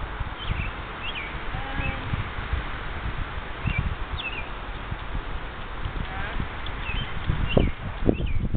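Outdoor ambience: steady wind rumble and buffeting on the microphone, with small birds chirping now and then.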